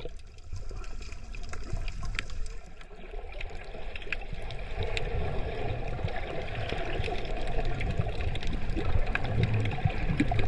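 Muffled underwater water noise picked up by a submerged camera: a steady wash with a low rumble and scattered short clicks, swelling somewhat after the first few seconds.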